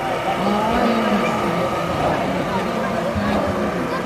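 A man's voice chanting in long, rising and falling notes over a steady background rumble.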